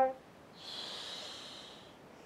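A long exhale through the mouth into a close microphone, a breathy hiss starting about half a second in and lasting just over a second, breathed out on the effort of a twisting Pilates crunch.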